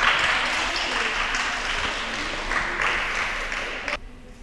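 Applause from a small group, a steady patter of clapping that cuts off suddenly near the end.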